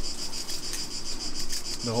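Insects chirring steadily outdoors, a high-pitched, fast-pulsing drone.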